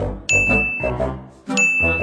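Two bright ding chimes, each held for about half a second, the second coming about a second and a half in, over bouncy brass-led background music with notes about twice a second.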